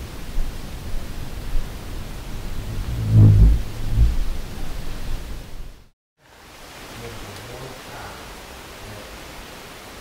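A low, fluttering, vibrating buzz close to the microphone, likened to a hummingbird's wings or a giant bug, swells about three seconds in for under a second and comes again briefly just after, over a steady background hiss. After a short dropout near the middle, a second recording follows with only fainter low buzzing in the hiss.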